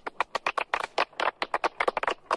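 A small group of people clapping their hands: a quick, uneven run of sharp claps, about eight a second.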